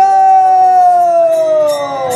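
Conch shell blown as one long, steady note whose pitch slowly sinks as the breath runs out, marking the end of the kirtan; a few faint hand-cymbal clinks sound near the end.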